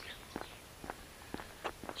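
Faint footsteps on a paved lane, about two steps a second.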